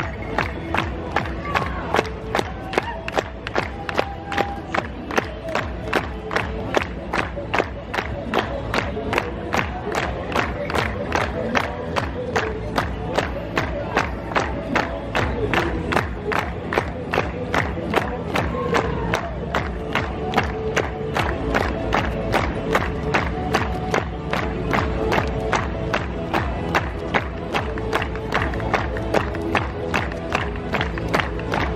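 Lively folk dance music for a Lithuanian dance, with a sharp, steady beat about twice a second, over the voices of a crowd.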